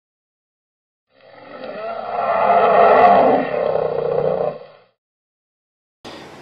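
A roaring sound effect that swells in over about a second, peaks about three seconds in and fades out before five seconds.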